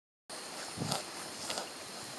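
A grazing cow tearing off grass, with two short rips over a steady hiss.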